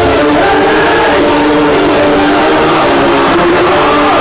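Loud live industrial electronic music played over a club PA: a stretch of held synth chords over dense noise, with the deep bass beat dropped out.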